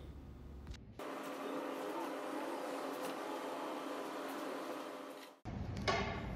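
A steady, faint machine hum that starts abruptly about a second in and cuts off abruptly near the end.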